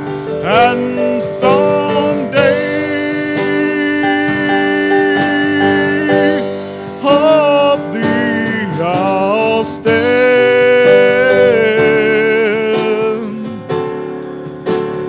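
A man singing a gospel song into a microphone over sustained instrumental backing, holding long notes that waver with vibrato.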